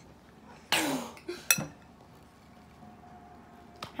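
Metal spoon, held in the mouth, clinking against a ceramic bowl while scooping marshmallows: one sharp, ringing clink about a second and a half in, with lighter ticks around it. There is a short breathy burst just before the first clink.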